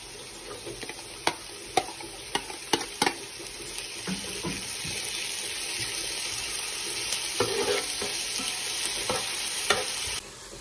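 Onions frying in oil in a nonstick pan, sizzling, with a utensil clacking and scraping against the plate and pan as diced tomato and green vegetables are pushed in and stirred. A run of sharp clacks comes in the first three seconds, and the sizzle grows louder from about halfway through.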